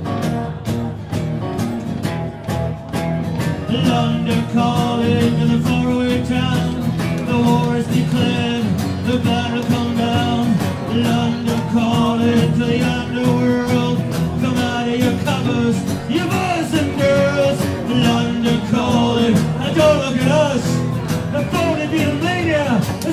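Live music: strummed acoustic guitar keeping a steady rhythm, with a melody line that bends and wavers in pitch coming in about four seconds in.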